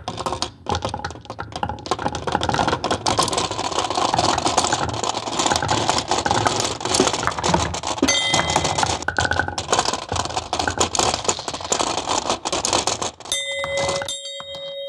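Steel marbles rolling off a plywood ramp and clattering into a 3D-printed plastic marble divider, a dense run of clicks as they fill its channels and knock against each other. A sustained ringing tone sets in near the end.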